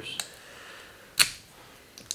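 A faint click just after the start, then one sharp snap about a second in, as the plastic seal is worked off the neck of a glass-stoppered bourbon bottle.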